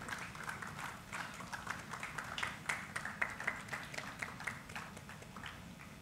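Audience applauding with scattered, irregular clapping that thins out slightly toward the end.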